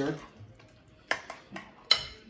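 Metal spoon clinking against a glass mixing bowl: a few light clicks about a second in, then a sharper clink near the end.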